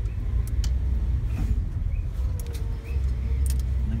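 Steady low rumble of a Toyota car's engine and tyres heard from inside the cabin while driving, with a few light clicks and rattles.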